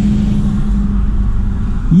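A small car's engine running and road rumble heard from inside the cabin as it moves slowly through a parking lot: a steady low hum over a deep rumble.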